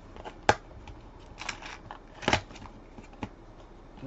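A pack of rugby league trading cards being taken from its box and opened by hand: a sharp click about half a second in and another just after two seconds, with light rustling between as the wrapper and cards are handled.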